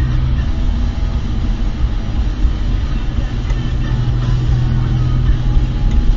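Car being driven, heard from inside the cabin: a steady low rumble of engine and road noise. A low hum in it fades about half a second in and comes back about three and a half seconds in.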